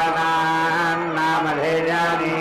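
Male chanting of Vedic mantras, the voice held on long steady notes with a brief dip in pitch about one and a half seconds in.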